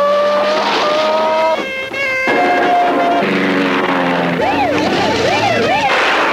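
Chase-scene vehicle sound effects: long, high tyre squeals over vehicle noise, then a siren wailing up and down from about four and a half seconds in.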